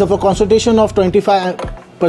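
A person talking in a steady run of speech, with short clicks between the words.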